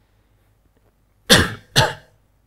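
A man coughs twice in quick succession into his hand, about a second and a half in.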